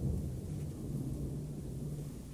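Low, steady rumbling background drone with a faint steady hum, typical of a film soundtrack's ambient sound bed.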